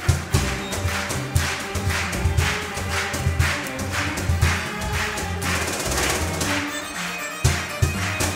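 Arabic takht ensemble playing an instrumental passage at a steady beat, with sharp hand claps about twice a second keeping time.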